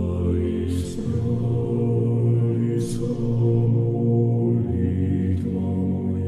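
Slow, low-pitched chanted music with long held notes; the pitch shifts about a second in and again near five seconds, with a few soft hissing consonants between.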